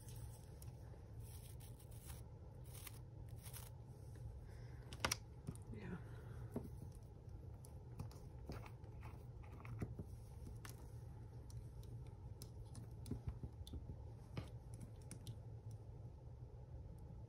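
Faint, scattered small clicks and taps of art supplies being handled on a cutting mat: a small ink bottle and its cap, a paintbrush and a toothbrush, over a low steady hum.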